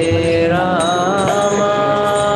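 Devotional kirtan: voices singing a chant in long held, gliding notes, with high jingling percussion keeping time.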